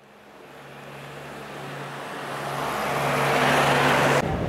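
A rushing noise over a low steady hum, growing steadily louder throughout.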